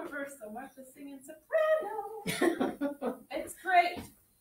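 Indistinct talking in a small room, with the voices louder from a little past two seconds in.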